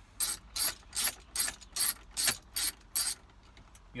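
Hand ratchet with an extension and 7 mm socket clicking in quick, even strokes, about three to four clicks a second, as it turns a gauge-cluster mounting bolt.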